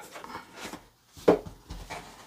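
A cardboard watch box's lid being slid off: soft rubbing and scraping of card against card.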